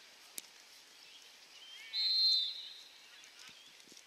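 An umpire's whistle is blown once about two seconds in, a steady high tone lasting about half a second, with a short sharp click a moment before it.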